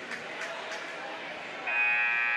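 Background murmur of a gym crowd, then about two-thirds of the way through the scorer's table horn sounds a loud, steady buzz, signalling a substitution.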